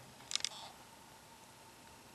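A quick cluster of two or three sharp clicks about a third of a second in, then low hiss with a faint steady tone.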